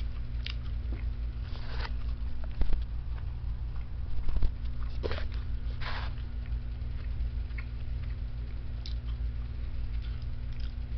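Close mouth noises of a man drinking from a can: a few short gulps and swallows, the two loudest about a third of the way in and a little before halfway, over a steady low hum.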